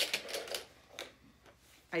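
A quick run of light clicks and clatter from a box of mini wax testers being handled, with one more click about a second in.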